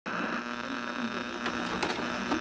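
Video static sound effect: a steady buzzing hiss with a hum running through it.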